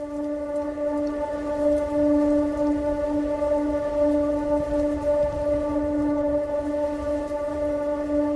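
A steady drone held on one pitch, rich in overtones, part of the film's score, over a low rumbling noise.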